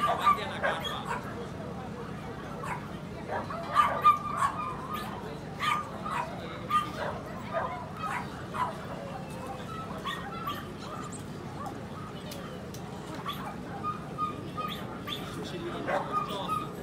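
A dog barking in short, repeated yaps, loudest and most frequent about four seconds in, with people talking in the background.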